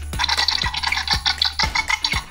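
Background music with a steady beat of about two strikes a second. Over it runs a raspy, hissing screech from the electronic sound box of a Mattel Jurassic World 'Blue' velociraptor toy, set off by pressing the toy.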